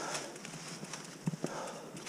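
Mountain bike riding over a leaf-strewn dirt trail, with the rider's hard breathing in gusts about a second apart and two short knocks from the bike about a second and a quarter in.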